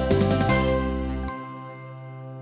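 End of a TV programme's intro theme music. The notes stop changing a little past halfway, and the tune settles on one held, ringing chord that slowly fades.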